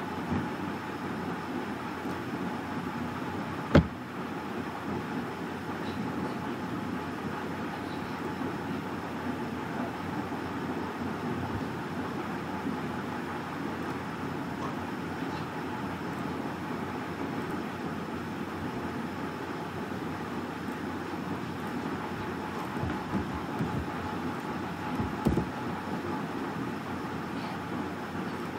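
Steady background noise with a faint hum, broken by one sharp click about four seconds in and a few soft knocks near the end.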